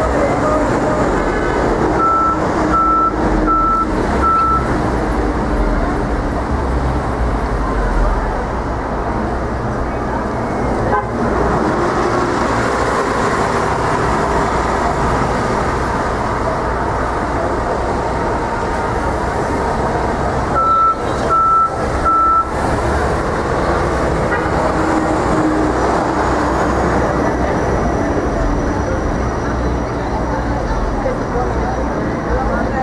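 Dense city street traffic, with cars and buses running through an intersection in a steady din. A short run of evenly spaced high electronic beeps sounds twice: four beeps a couple of seconds in, and three more about two-thirds of the way through.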